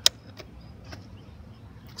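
One sharp plastic click from handling a Cen-Tech 750 W power inverter near the start, then a few faint ticks over a quiet, steady background.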